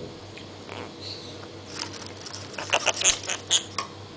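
Lovebird scrabbling in and out of a cardboard tube on a hard floor: a burst of quick sharp scratches and taps from its claws and beak on the card, clustered about three seconds in.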